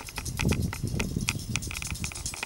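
A rapid, irregular patter of light clicks and taps over a low rumble.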